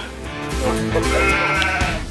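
Edited-in music: a held note with many overtones lasting about a second and a half.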